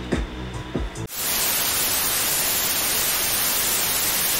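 Background music for about the first second, cut off suddenly by loud, steady television static: an even white-noise hiss with no tone in it.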